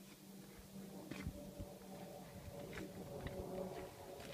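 Faint, steady drone of an aircraft passing high overhead, with a few light ticks.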